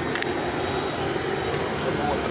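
Oil-fired boiler's burner running, a steady even rushing noise, with the boiler working normally after service.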